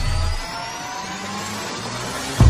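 Logo-sting sound effect: a rising whoosh of noise with several tones slowly climbing in pitch. A low rumble under it drops away about half a second in.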